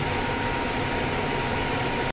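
Steady running hum of a CNC vertical machining centre with a thin, constant whine, the tool standing clear of the work with no cutting under way.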